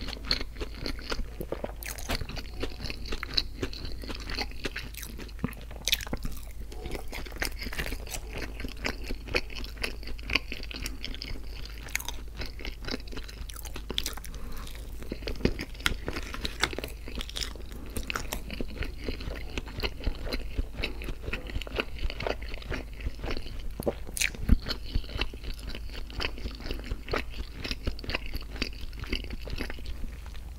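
Close-miked chewing of a mouthful of syrup-soaked McDonald's hotcakes, with many sharp wet mouth clicks throughout, over a steady low hum.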